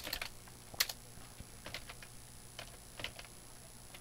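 Quiet, irregular computer keyboard keystrokes: a scattered handful of short clicks with pauses between them, the sharpest at the very start and just before the one-second mark.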